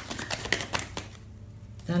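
A deck of fortune-telling cards being shuffled by hand, a quick run of light clicks and snaps for about the first second that then fades off.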